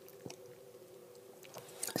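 Faint sipping and swallowing of Diet Coke through a straw from a steel tumbler, with a soft click about a quarter second in and another near the end. A faint steady hum runs underneath.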